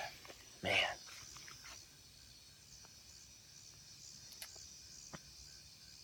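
Faint, steady high-pitched chorus of crickets in the evening, with a few soft clicks.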